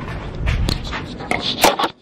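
Handling noise from a phone being carried: rubbing and a low rumble on the microphone with several sharp clicks and knocks. The sound cuts off suddenly near the end.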